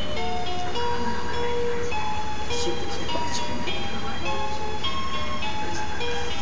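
Musical baby mobile playing a simple tune of single notes, one after another, over a steady low hum.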